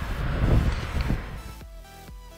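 Outdoor street noise with a heavy low rumble, like wind on the microphone, which gives way about one and a half seconds in to electronic background music.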